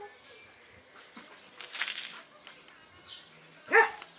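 Australian Cattle Dog puppies playing: a short harsh, noisy sound about halfway through, then one loud, brief high-pitched yelp near the end.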